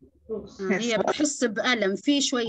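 Speech only: a person talking, in words the transcript did not catch.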